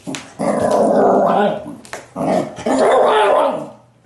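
A Shiba Inu growling in two bouts of about a second each, traded with a repeat-back plush toy that copies its growl.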